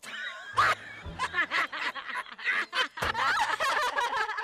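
A man laughing heartily in many short, repeated bursts.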